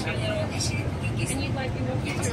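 Electric commuter train with a Toshiba IGBT VVVF drive running, a steady rumble inside the passenger car, with indistinct voices of people talking over it.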